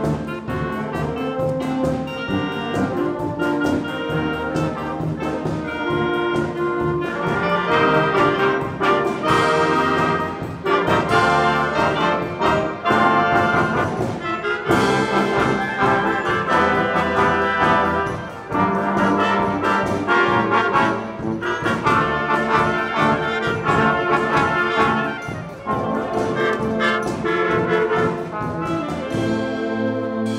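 Student marching band playing, with trombones, trumpets, saxophones and sousaphone carrying the music over a steady beat.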